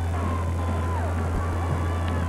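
A steady low hum under faint music.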